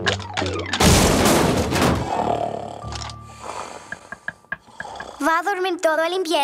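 A loud cartoon crash about a second in, lasting about a second, then fading into scattered small knocks and clatters as things settle.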